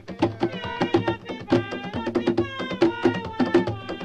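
Music with quick, regular percussion strokes and a high melodic line that slides and bends in pitch.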